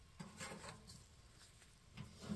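Near silence: faint outdoor background with a few soft, brief rustles in the first second.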